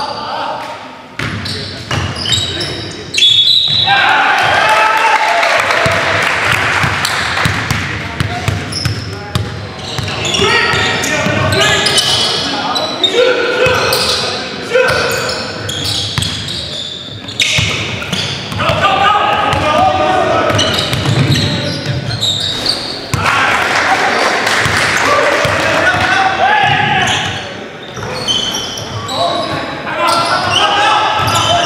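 Basketball game sounds in a gymnasium: the ball bouncing on the hardwood floor amid players' voices calling out, echoing in the large hall.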